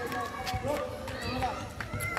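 Several people's voices overlapping at a distance, calling out during football training, with a few short sharp knocks.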